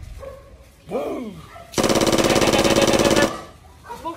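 A rapid burst of automatic gunfire lasting about a second and a half, starting a little before the middle. A short cry that rises and falls in pitch comes just before it.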